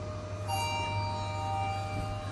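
Lift arrival chime: a bell-like chord strikes about half a second in and rings on, fading as the car reaches the floor, over the steady low hum of the lift car.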